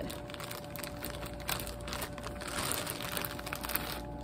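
Clear plastic bag crinkling and rustling in a dense run of small crackles as it is pulled off a model horse.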